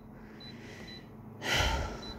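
A short breath, a quick gasp-like intake of air close to the microphone, about a second and a half in, after a stretch of quiet room tone.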